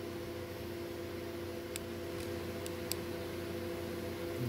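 A steady background hum with a few faint, light clicks around the middle as small brass standoffs are handled and fitted onto a circuit board.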